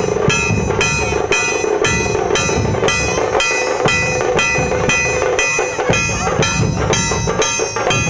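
Rhythmic procession music: a metal percussion instrument struck evenly about twice a second, each strike ringing, over steady drumming.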